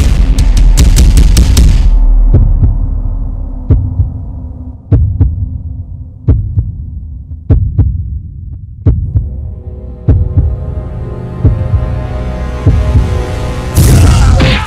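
Suspense film score: loud music with rapid percussive hits cuts away about two seconds in, then a low heartbeat-like thump repeats about every 1.3 seconds, around eight times, over a sustained drone that swells in the second half. A loud hit lands near the end.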